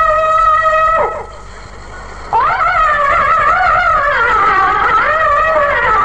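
A man's unaccompanied voice chanting a Sindhi naat. He holds a long high note that drops away about a second in, pauses briefly, then comes back in on a rising note and carries on in a wavering, ornamented melodic line.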